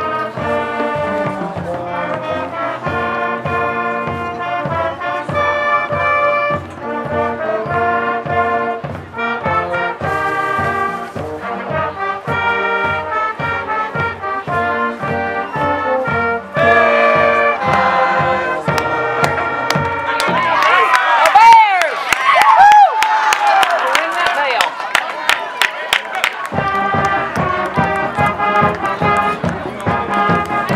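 School pep band playing a brass tune, trumpets and trombones over a steady bass drum beat. About two-thirds of the way through, the drum beat drops out under a louder, noisier stretch with sliding tones, and the beat returns near the end.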